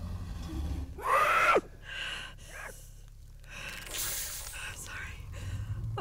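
A woman crying: a loud wailing sob that falls in pitch about a second in, then shorter sobs and a sharp gasping breath around four seconds.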